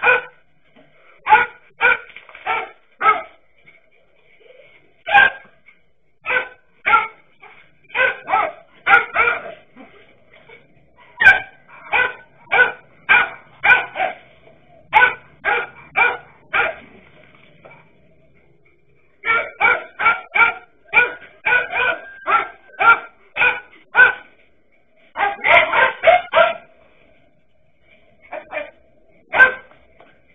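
Dachshunds barking sharply and repeatedly at a snake they are confronting, in runs of quick barks about two a second. The barking breaks off for a couple of seconds past the middle, then resumes just as fast.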